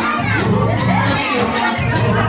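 Dance music with a steady beat and bass line, with a crowd of people shouting and cheering over it; a few rising shouts stand out about half a second in.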